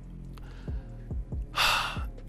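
A man's quick, sharp intake of breath near the end, over faint, steady background music.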